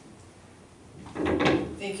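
A thump of handling at the wooden lectern close to its microphone, about a second in, after a quiet moment of room tone. A woman starts speaking just after it.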